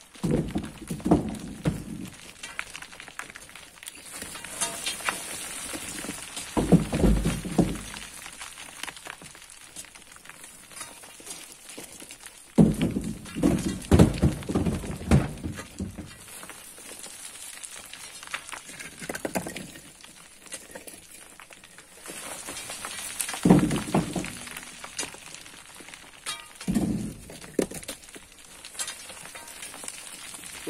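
Loose earth and stones sliding and trickling down a steep dirt cliff face in about six separate rustling bursts, each one to three seconds long, as a long pole pries soil loose.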